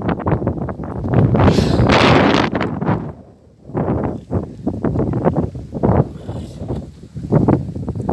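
Strong wind buffeting a phone's microphone in loud, irregular gusts, with a brief lull about three seconds in.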